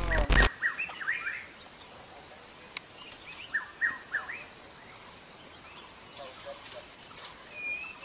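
Small birds chirping: clusters of quick sweeping chirps about a second in and again about four seconds in, and a thin drawn-out whistled note near the end, over a faint background hiss. A brief loud burst of noise opens it.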